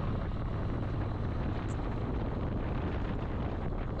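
Triumph Speed Twin 900's parallel-twin engine running steadily while the motorcycle cruises, with wind noise on the microphone.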